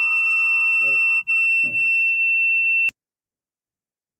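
A loud, steady, high-pitched electronic tone, one unwavering pitch with fainter overtones, over the video-call audio, with two brief voice sounds beneath it. It cuts off abruptly about three seconds in, and the audio drops to silence.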